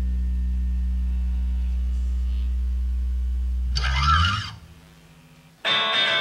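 A live rock band's held low bass note drones steadily. About four seconds in it breaks off in a short flurry of guitar notes. After a second's lull, electric guitar strumming starts the next passage near the end.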